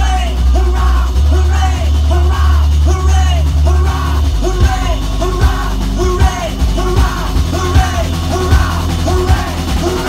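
A live rock band playing loudly through a club PA: bass guitar, drums and a short repeating riff, with the drum hits growing sharper and more frequent about halfway through.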